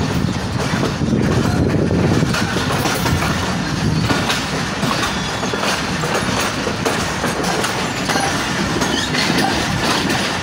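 Passenger train coach running at speed: a steady rumble with the wheels clattering over the rail joints in irregular clicks.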